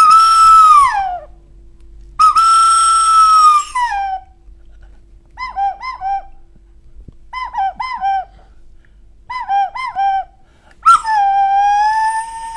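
Loud, clear whistling. Two long held notes each slide down at the end, then come three bursts of quick warbling double notes, and a new held note starts near the end.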